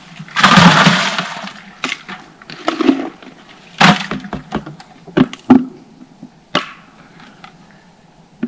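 Plastic sap pail and its lid being handled: a noisy rush lasting about a second near the start, then a string of sharp knocks and cracks.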